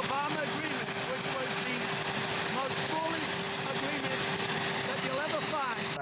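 Helicopter turbine engines running steadily on the ground, with a constant hum and a thin high whine, all but drowning out a man talking.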